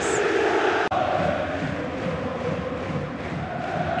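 Football stadium crowd chanting in support of the home side: a dense, steady mass of many voices, with a momentary dropout about a second in where the broadcast is cut.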